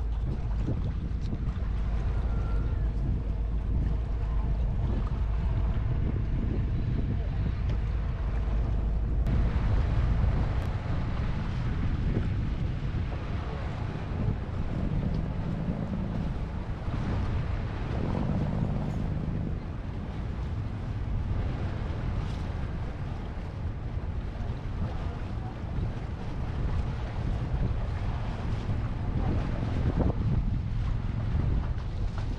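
Wind buffeting the microphone and water washing past as a small car ferry crosses the harbour, with its engine's steady drone underneath. The low wind rumble is heaviest at first and eases about ten seconds in.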